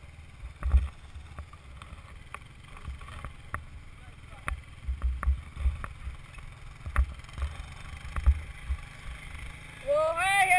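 Wind buffeting a helmet-mounted action camera's microphone in irregular gusts while being towed over snow, with scattered sharp clicks and knocks.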